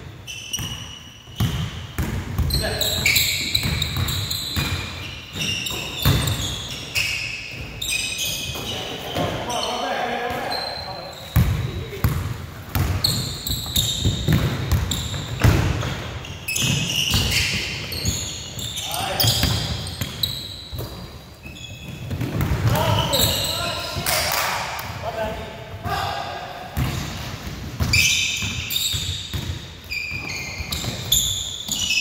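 Basketball dribbled and bouncing on a hardwood gym floor, with sneakers squeaking on the court and players' voices, all echoing in the large hall.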